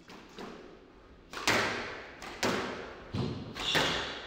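Squash ball being struck by rackets and hitting the court walls during a rally: two faint knocks at the start, then four loud, echoing strikes about a second apart. A shoe squeaks on the wooden floor near the end.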